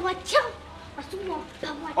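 A young girl speaking in short, high-pitched phrases.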